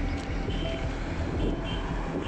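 Steady rumble of road traffic on a highway, with wind buffeting the microphone.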